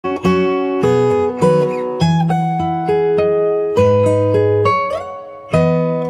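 Enya X4 Pro carbon fiber acoustic guitar played fingerstyle with a capo: a plucked melody over bass notes, a new note or chord about every half second, each ringing and fading. The notes die down a little toward the end before a fresh chord rings out.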